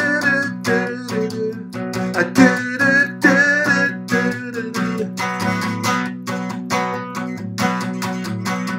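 Steel-string acoustic guitar strummed in a quick, steady rhythm of chords, the strokes sharp with the chords ringing under them.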